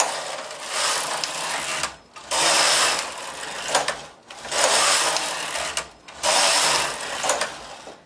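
Carriage of a Studio 860 mid-gauge knitting machine pushed back and forth across the needle bed, knitting four rows: the end of one pass, then three more passes, each a noisy run of about one and a half seconds with a short break between them.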